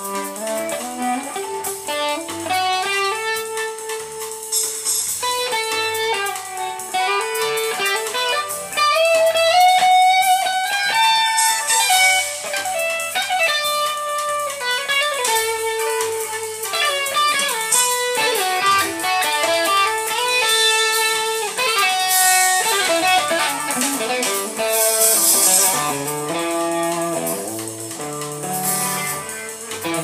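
Electric guitar playing melodic lead lines, with a slow bent note about nine seconds in, over a backing track of bass and drums.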